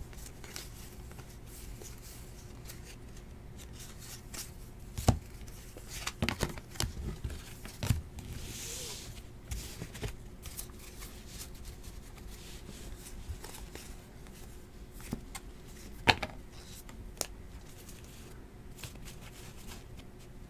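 Trading cards being handled: cards slid and flipped through in the hands and set down on the table, with quiet rustling and scattered sharp taps, the loudest about five seconds in and again about sixteen seconds in.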